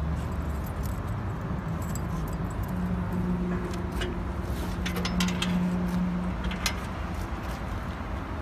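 Light metallic clinks and rattles as a hand works a fastener on the side skirt under a ride-on floor sweeper, checking the brush skirt rubbers. A steady low rumble runs underneath, with a steady low hum in the middle for about three seconds.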